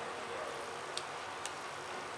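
Steady background hiss of room tone, with two faint light clicks about half a second apart, roughly a second in.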